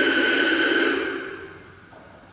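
Broadcast sound from portable radios: a blur of music with a steady high tone running through it. It fades away quickly about a second in, leaving only a faint remainder.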